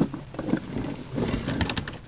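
Plastic Lego model scraping across corrugated cardboard and dropping into a cardboard pit, with a quick clatter of plastic clicks in the second half.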